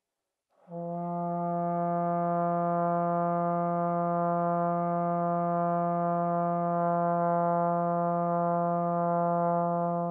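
Tenor trombone playing a single long tone on middle F (fourth line of the bass clef), starting just under a second in and held steady and even in pitch and volume for about ten seconds, a long-tone exercise focused on breath and sound.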